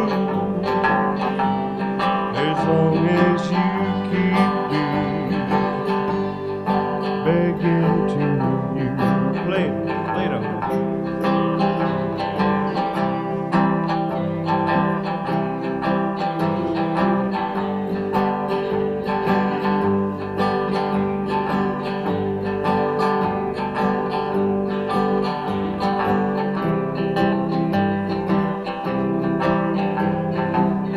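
Live country band playing with guitars and electric bass: steady strummed and picked guitar over a regular bass beat.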